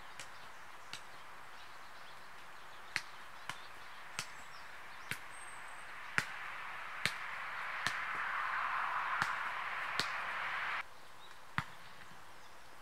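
A soccer ball being juggled on the feet: about a dozen short kicks at uneven intervals. A hiss swells in the second half and cuts off suddenly near the end.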